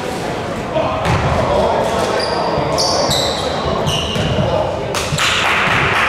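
Echoing sounds of a basketball game in a large gym: a ball bouncing on the hardwood floor and voices talking, with short high squeaks around the middle and a louder rush of noise near the end.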